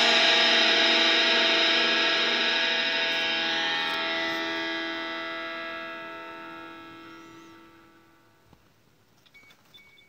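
A distorted electric guitar chord, the last of the song, ringing out and slowly fading to near silence over about eight seconds, with a few faint clicks near the end.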